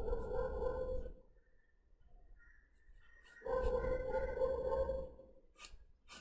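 Graphite pencil scratching across drawing paper in two stretches of sketching strokes, the second longer, followed by a few faint light ticks near the end.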